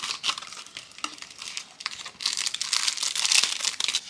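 Clear plastic wrapping crinkling as a hand rummages in it and pulls out a sticker sheet, with light crackling at first and a louder, denser stretch of crinkling in the second half.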